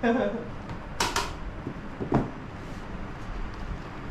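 Kitchen utensils clacking against a metal baking tray: two sharp clacks close together about a second in, and a lighter one about two seconds in.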